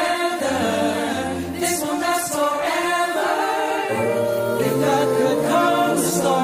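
A cappella vocal group singing in harmony, several voices with a low bass part holding sustained notes that change every second or so.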